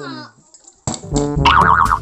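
Comic brass-style background music: a downward-sliding tone fades out in the first half second, a brief gap follows, and the music comes back just under a second in with a warbling high tone.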